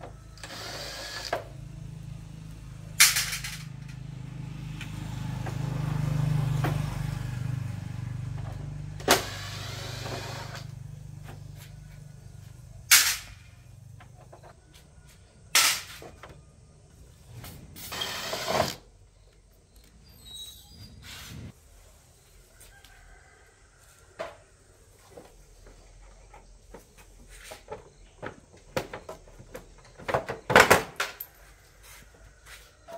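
Hand tools and motorbike parts being worked during disassembly: sharp metal clinks and knocks every few seconds as body panels and bolts come off. A low engine hum swells and fades away over the first half.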